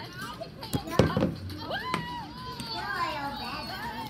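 Children's voices calling out and chattering in play, high and overlapping, with a sharp knock about a second in.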